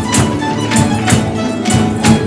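Folk string ensemble of guitars and lutes playing a Christmas carol (villancico), with hand percussion marking a steady beat of about two to three strikes a second.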